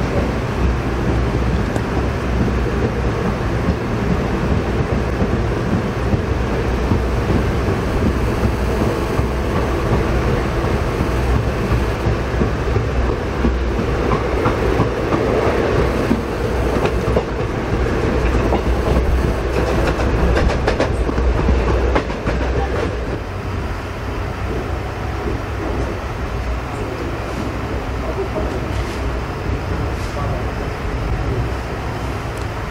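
Express passenger train running at speed, heard from inside a coach: a steady rumble of wheels on rail. A run of sharper knocks comes about two-thirds of the way through, and then the sound eases slightly.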